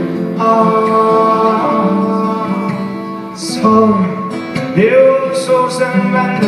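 Two acoustic guitars playing with a man singing.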